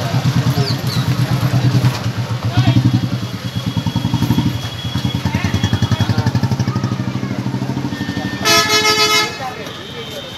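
A vehicle engine idling close by with a fast, even throb, and a vehicle horn honking once for just under a second near the end.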